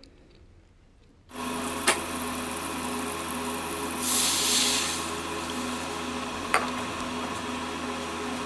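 After about a second of near silence, melted butter sizzles in an aluminium karahi. About four seconds in, jaggery (gur) syrup is poured into the hot butter and the pan hisses louder for about a second, then settles back to a steady sizzle. There are a couple of faint utensil clicks.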